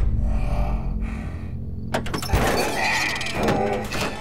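Cinematic advert sound design: a deep low boom, then about two seconds in a sudden sharp hit that opens into a dense clatter of effects under the score.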